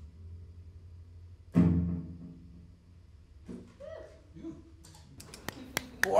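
Electric guitar ending a bluesy song: held notes fade, then a final chord is struck about one and a half seconds in and rings out. Near the end a few sharp hand claps begin.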